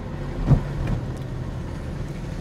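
A car moving slowly in traffic, heard from inside the cabin: a steady low engine and road hum, with a single thump about half a second in.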